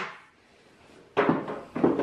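Near silence, then about a second in a brief rustle and scrape of cardboard and foam packing as a flat-pack furniture panel is handled in its box, with a second short rustle near the end.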